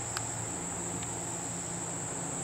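Steady, high-pitched insect chorus, one unbroken shrill tone, over a faint low hum, with a single small click just after the start.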